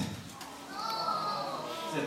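A brief high-pitched child's voice in the hall, lasting about a second, in a pause between a man's amplified phrases.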